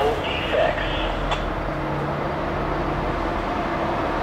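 Norfolk Southern diesel-electric locomotive running as it rolls slowly past, a steady low engine drone with track and wheel noise. A single sharp click about a second in.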